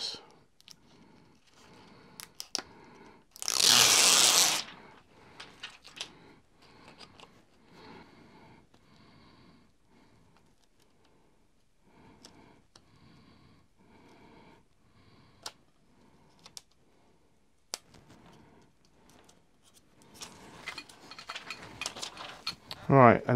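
Backing paper peeled off a self-adhesive abrasive film strip in one quick tear a few seconds in. After it come faint rustling and small clicks as the sticky strip is handled and pressed onto a glass plate.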